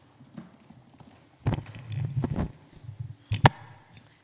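Handling noise on a gooseneck desk microphone: a second of low rumble and soft knocks, then one loud, sharp click near the end as the microphone is handled or switched on.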